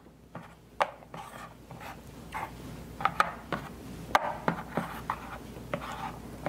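Player markers being slid and set down on a soccer tactics board: scattered light clicks with soft rubbing scrapes in between.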